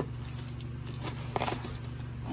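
Small cardboard box and its bubble-wrap packing being handled and opened, with faint rustling and a few small crackles and clicks about one and a half seconds in, over a steady low hum.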